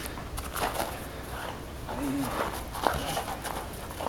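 A pit bull-type dog's paws landing and scuffing on snow-covered ground as it leaps for a towel and tugs at it, with scattered soft knocks and a brief low voice sound about two seconds in.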